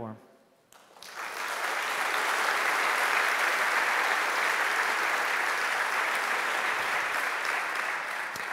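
Audience applauding, starting about a second in and holding steady.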